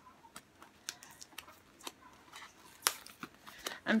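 Scattered light clicks and ticks from hands working at a new bath mat's attached tag, trying to tear it off; one sharper click about three seconds in.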